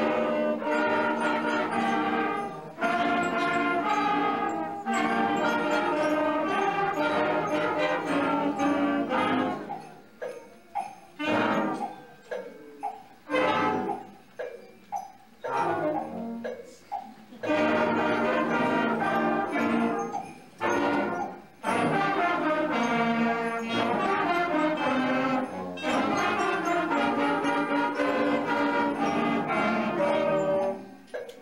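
School concert band of saxophones, clarinets and other wind instruments playing a piece in held chords, with a stretch of short, detached notes and brief gaps in the middle before the held chords return.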